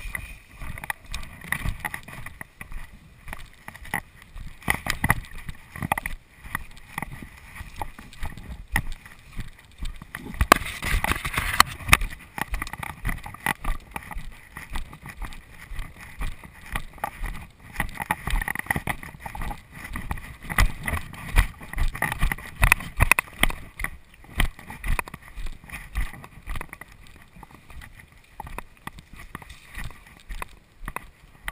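Footsteps and the rustle of grass and brush against legs and the body-worn camera while walking through tall vegetation: irregular low thumps with a louder stretch of brushing about ten seconds in.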